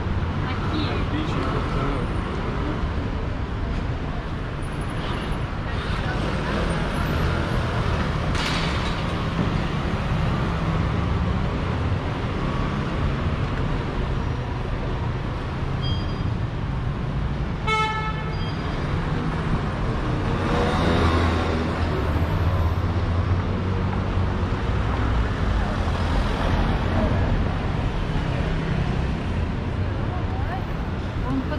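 City street traffic running steadily, with passersby talking. A single short horn toot sounds a little past halfway, and a vehicle passes louder about two-thirds of the way in.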